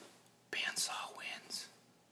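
A person whispering a few words, starting about half a second in and lasting about a second.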